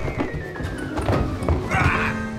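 A body falling down carpeted stairs: a quick run of dull thuds, about three a second, over music with a slowly falling tone.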